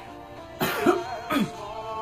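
Two loud coughs from a congested person, about three-quarters of a second apart, over background music with singing.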